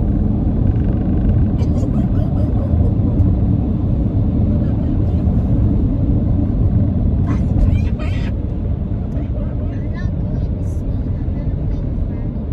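Steady low road rumble inside the cabin of a moving car.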